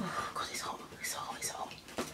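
A woman whispering softly, with breathy, hissing consonants a few times over.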